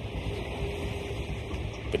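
Steady low rumble and hiss of road and wind noise from travel along a bridge deck, with a faint held tone through the middle.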